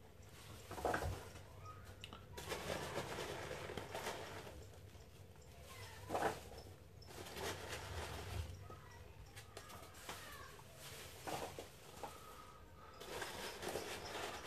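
Packing material being pulled out of a cardboard box by hand: intermittent rustling and crinkling of paper and packing peanuts, with a few sharp knocks.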